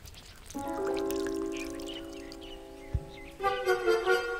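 Background music: a held chord of several sustained notes that gives way to new notes about three and a half seconds in, with one low thump near three seconds.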